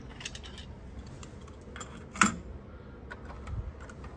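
A cassette being loaded into a Teac V-8030S cassette deck and its door shut: a few light plastic handling clicks, then one sharp click a little over two seconds in as the door latches, and a soft low thump near the end.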